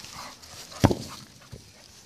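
A single sharp thump about a second in, a football being kicked on grass for a dog to chase.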